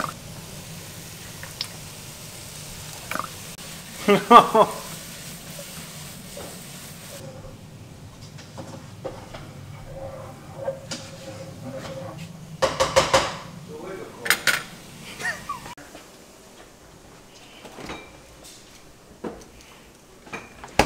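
Kitchen clatter: pots, pans and utensils knocking and clinking in scattered bursts, busiest a little past the middle, over a low steady hum.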